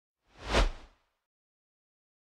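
A single whoosh sound effect for a logo reveal, swelling quickly and dying away in under a second.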